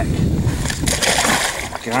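A sturgeon splashing into the river as it is released over the side of a boat, a short burst of splashing about a second in.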